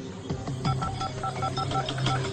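Mobile phone keypad tones as a number is dialed: a quick run of short, even beeps lasting about a second, starting near the middle, over background music.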